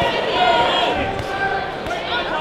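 Live ringside sound at a boxing match: several voices calling out in a large, echoing hall, with dull thuds from the ring.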